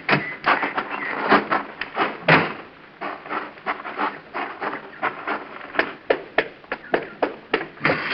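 Footsteps on a hard floor, a run of sharp, irregular taps about three a second, as a sound effect in an old radio drama.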